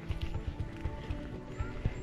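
Footsteps knocking on the wooden planks of a footbridge as several people walk across it.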